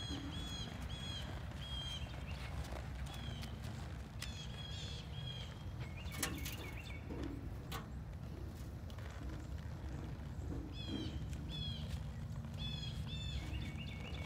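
Birds chirping in short, repeated calls over a low outdoor rumble, with a mule's hooves stepping on soft dirt. A couple of sharp clicks come a little before and after the middle.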